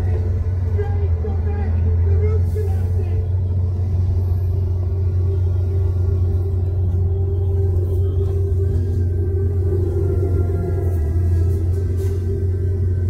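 Steady low rumble of a car driving along a road, road and engine noise. A faint voice can be heard underneath in the first few seconds.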